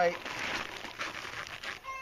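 String-reinforced polyethylene greenhouse sheeting crinkling and rustling as it is pulled tight and its edge tucked in.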